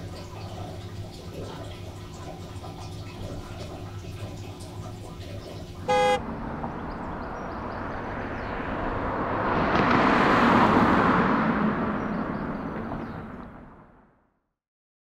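Steady low hum, then about six seconds in a short, loud car horn toot, followed by a car passing close by, its road noise swelling to a peak and fading away.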